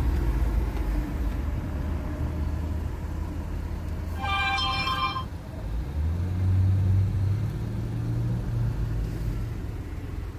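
Car cabin rumble from the engine and road noise while driving. About four seconds in, a brief ringing tone lasts about a second, and from about six seconds the engine hum grows louder and rises a little as the car picks up speed.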